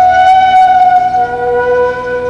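Soundtrack music: a flute-like wind instrument holding long, steady notes, stepping down to a lower held note a little over a second in.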